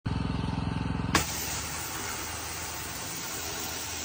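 A pressure washer running, its motor giving a fast pulsing hum; about a second in the spray snaps on and a steady hiss of the high-pressure water jet on the cast-iron manhole cover carries on, with the motor's hum underneath.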